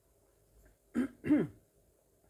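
A person clearing their throat: two short sounds about a second in, the second rising then falling in pitch.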